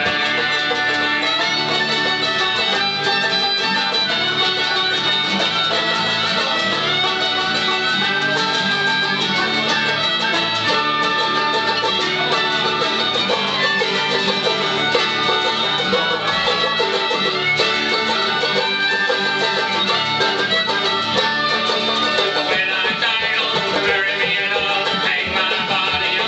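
Live folk band playing an instrumental break: a tin whistle carries the melody over strummed banjo and acoustic guitars, at a steady lively level. Singing comes back in right at the end.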